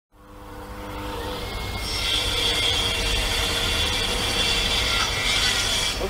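A steady mechanical whir with a few held tones over a noisy hiss, fading in over the first couple of seconds.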